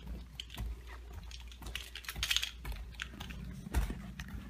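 Irregular light clicks, taps and rustles of someone walking with a handheld camera, footsteps and handling noise, with one louder knock near the end.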